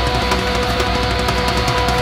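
Live southern rock band playing an instrumental passage: electric guitars hold sustained notes over drums with a steady cymbal beat.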